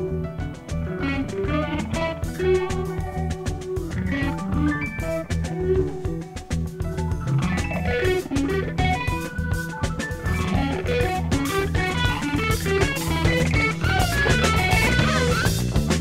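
Instrumental jazz-rock band music: guitar playing quick runs of notes over bass guitar and drum kit, growing louder and busier near the end.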